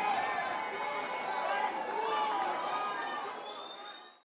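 Crowd chatter: many people talking at once, fading out toward the end.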